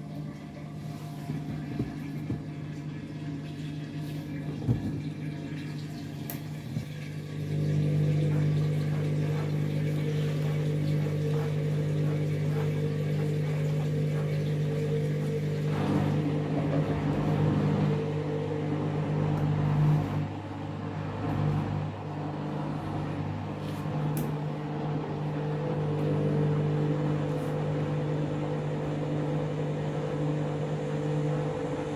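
Candy front-loading washing machine spinning a drum of bedding: a steady motor hum that grows louder about eight seconds in and holds steady.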